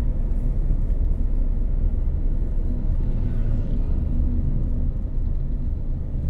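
Steady low rumble of a car driving along a road, with engine and tyre noise heard from inside the cabin.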